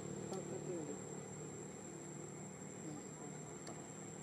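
Steady high-pitched insect drone, one unbroken tone.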